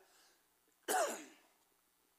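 A man clearing his throat with a short cough, once, about a second in.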